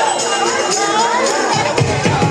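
Soul song played over a sound system for a line dance, with crowd voices under it; a deep bass beat comes in about one and a half seconds in.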